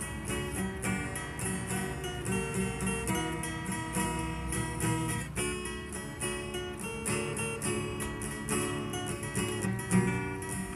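Two acoustic guitars strummed together, playing chords in a steady rhythm.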